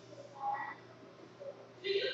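A girl's short, creaky vocal sound about half a second in, like a stifled giggle or hesitant "mm", then a breathy hiss starting near the end.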